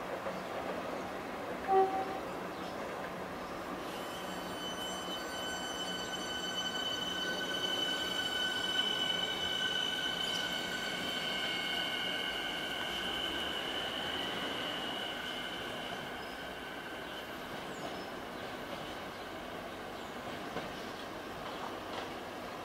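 Electric suburban train running through a station, with a high squeal of several steady tones that starts about four seconds in and fades out around three-quarters of the way through, over the running rumble of the train.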